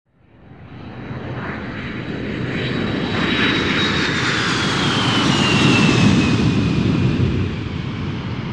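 Sound effect of an aircraft passing overhead: a rushing engine noise that swells in from silence, with a high whine falling slowly in pitch midway through, then easing off near the end.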